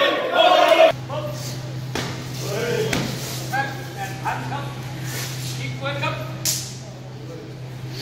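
Chatter of voices in a large echoing gym hall, broken by a few sharp smacks of Muay Thai strikes landing.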